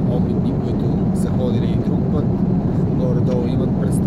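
Steady, loud low drone of engine and air noise inside a jet airliner's passenger cabin.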